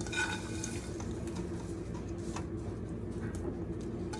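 Soft rustling and a few faint light taps as flour tortilla strips are scattered by hand from a ceramic plate into a stainless steel pot, over a steady low hum.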